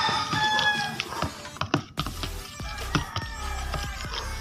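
Plastic spatula stirring and scraping thick batter in a plastic container, with scattered sharp clicks against the container, over background music. A pitched, gliding sound stands out in the first second.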